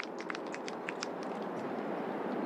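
Outdoor ambience of a golf course: a steady, even hiss, with a few faint high ticks in the first second or so.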